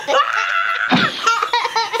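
A young child laughing in long, high giggles, broken by a short rushing noise about halfway through.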